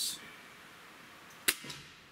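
Gamo Swarm Magnum Gen3i .177 break-barrel air rifle firing once, about a second and a half in: a single sharp crack with a brief ringing tail, sending a 9.57-grain Hornet pellet through the chronograph at about 1,016 feet per second.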